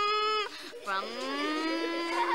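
A girl's voice imitating a car engine, "brum... brum": two long drawn-out notes, each sliding up in pitch like a revving engine. The first breaks off about half a second in, and the second starts about a second in.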